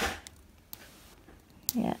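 Mostly quiet room tone, with a short noisy sound at the start and a couple of faint clicks, then a woman says "yeah" at the end.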